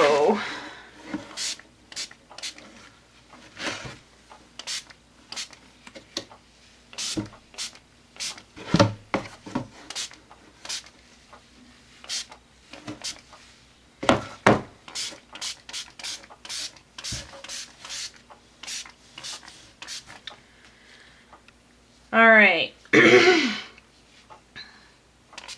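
Repeated short squirts from a finger-pump ink spray bottle (Lindy's Stamp Gang Buccaneer Bay Blue) misting onto a canvas, each a brief hiss, at irregular intervals. Two longer, louder bursts come near the end.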